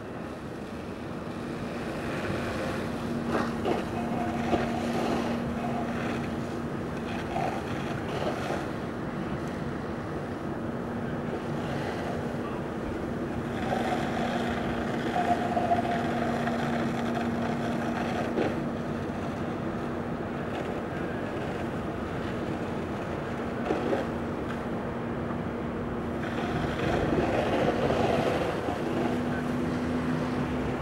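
Steady engine hum of fire apparatus pumping water to the hose lines, under an even rushing noise from the hose streams and the burning truck. Near the end the hum steps slightly higher in pitch.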